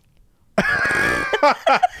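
A person laughing: a breathy, noisy burst of air starts about half a second in, then breaks into short, choppy laugh syllables.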